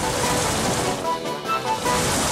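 Cartoon sound effect of rushing, churning water, heard under background music that plays short melodic notes.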